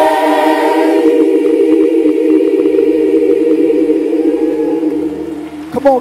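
A large gospel choir singing one long held chord, with low bass notes coming in underneath about halfway through. The voices fade away just before the end.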